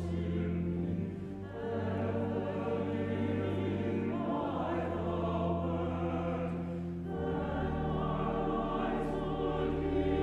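Church choir singing a slow piece in long held chords that change every few seconds, with vibrato in the upper voices over low sustained bass notes.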